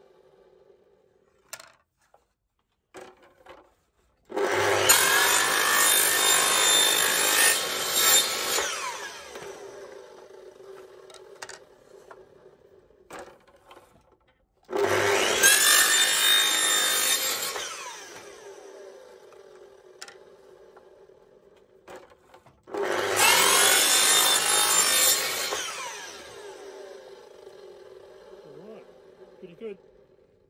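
Power saw with a circular blade starting up and cutting through a sheet of recycled pressed plastic, three separate cuts of a few seconds each. After each cut the blade's hum winds down slowly, with light handling knocks in between.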